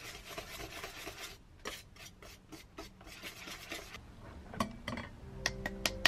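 A wire whisk beats wet banana bread batter in a stainless steel bowl, with quick, irregular scraping strokes against the metal. Near the end come a few sharp clinks, and soft music starts.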